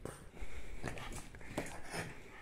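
A French bulldog snuffling through its short nose, a few brief breathy sounds about half a second apart.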